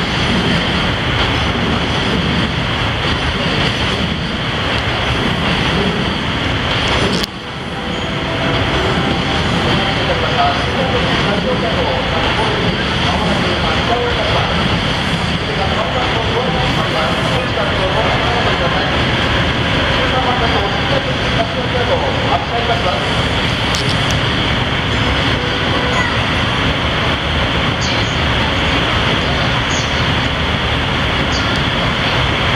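Loud, steady railway-station platform noise around a standing EF510 electric locomotive: an even rushing hum from the locomotive and station, with a faint steady tone and indistinct voices mixed in. The noise briefly dips about seven seconds in, then carries on as before.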